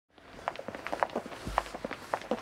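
Footsteps of several people walking on a paved street, an uneven run of short steps a few per second, rising out of silence at the very start.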